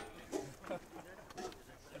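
Faint, brief voices in a lull in the conversation, with a few light clicks.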